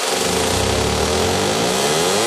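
Electronic dance music transition effect: a buzzing synth sweep dips in pitch and then climbs back up, over a deep bass hum and a wash of noise.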